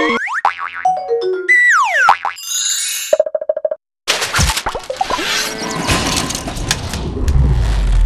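Cartoon-style logo sound effects: springy, boing-like tones sliding down and up in pitch, then a fast pulsing buzz that stops in a brief silence just before the halfway point. After it comes a dense, noisy rush full of clicks, with a deep rumble swelling near the end.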